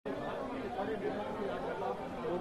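Several people talking at once in a continuous, overlapping chatter, with no single voice standing out.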